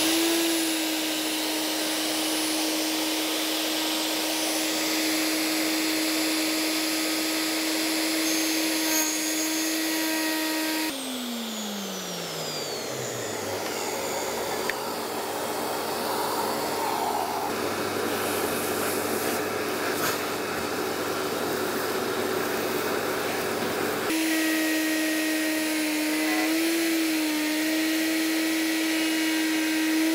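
Electric plunge router running steadily, cutting a guitar body and its MDF template, with a dust-extraction vacuum running on the hose. About a third of the way in the router winds down, falling in pitch while the extractor keeps running; near the end the router is running again.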